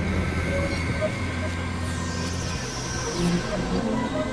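Experimental electronic synthesizer drone music: a steady low drone under sustained high tones and scattered short pitched blips, with a high sweep falling in pitch about two seconds in.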